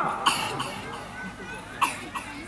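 A brief pause in a man's speech through a microphone: his voice fades out, then a short cough-like throat sound comes near the end.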